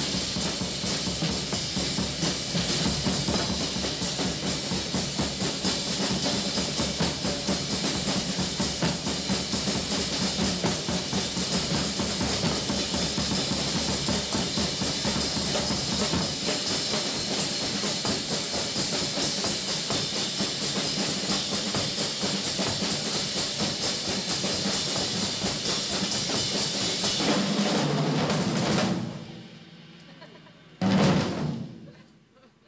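A large ensemble of drum kits playing together: a dense, continuous beat with snare rolls, bass drum and cymbals. The drumming stops about a second before the end.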